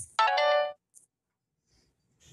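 A short electronic phone chime: several tones sounding together for about half a second, then cutting off.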